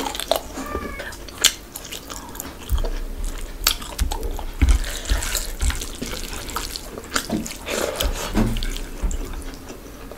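Close-up wet chewing and lip smacking of rice and chicken curry, with many sharp mouth clicks, and the squelch of fingers mixing rice into curry gravy on the plate.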